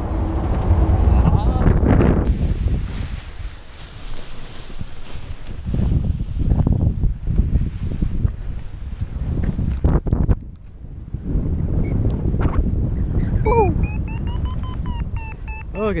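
Wind buffeting the microphone of a paraglider pilot's camera in flight. Near the end, a paragliding variometer starts beeping in quick short tones that rise in pitch, the signal that the glider is climbing in lift.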